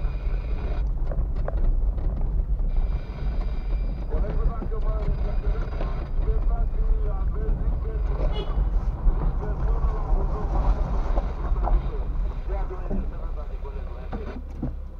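Low, steady rumble of a car driving slowly over broken concrete, heard from inside the cabin. Indistinct talk runs over it in the second half.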